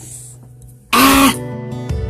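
A woman gives one short, sharp cough-like throat sound about a second in, over background music.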